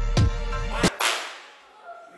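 Intro music with a heavy bass line and strong beat hits stops just under a second in on a final sharp crack whose hissing tail fades away over about half a second.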